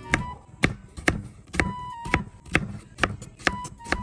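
Chef's knife chopping a carrot on a wooden cutting board, a steady run of sharp knocks about two a second. A quiet melody of background music plays underneath.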